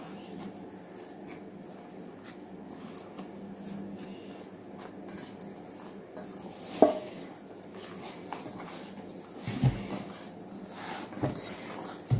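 Quiet handling sounds of risen yeast dough being punched down and folded in a stainless steel bowl, the dough being deflated after its two-hour rise. One sharp knock about seven seconds in, and soft low thumps a little before ten seconds.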